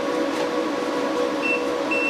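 Steady electrical hum with fan hiss from running Growatt 5000ES solar inverters and their transformer. A thin, high whine comes in about one and a half seconds in.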